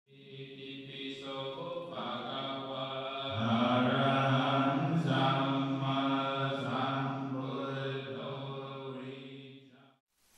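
Chanting voices in long held notes, several pitches layered, fading in at the start and fading out near the end.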